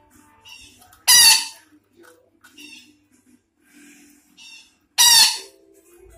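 A betet Sumatra parakeet giving two loud, harsh screeches about four seconds apart, about a second in and near the end. Softer short chattering calls come between them.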